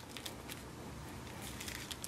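Faint crinkling and light clicks of plastic-coated shelf liner as a pouch made from it is pressed and squeezed shut by hand.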